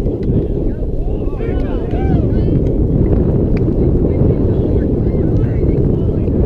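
Wind buffeting the microphone, a steady low rumble. Faint voices can be heard about one and a half to two and a half seconds in.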